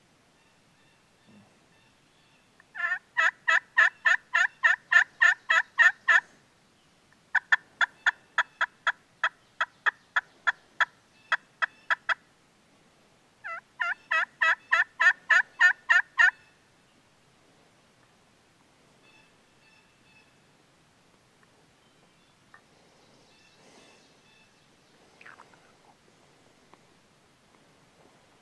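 A turkey call working hen yelps: three runs of short, evenly spaced yelps, about four a second, the middle run the longest, then quiet woods with a few faint rustles near the end.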